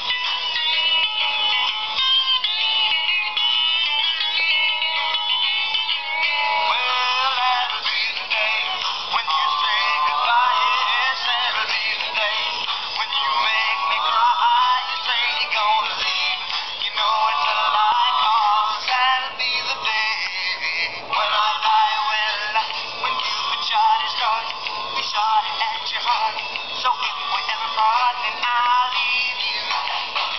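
Tamco Soundwagon toy VW bus record player driving round a vinyl LP and playing a song with singing through its small built-in speaker. The sound is thin and tinny, with almost no bass.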